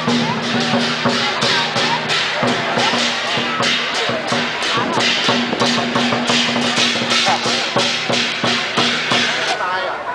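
Lion dance percussion: a large drum beaten with steady, rhythmic crashes of cymbals. It stops abruptly shortly before the end.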